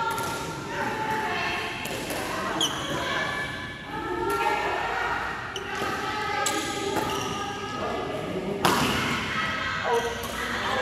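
Badminton rally in a large echoing hall: several sharp racket strikes on the shuttlecock, the loudest near the end, with a few short high squeaks from shoes on the court, over players' voices talking.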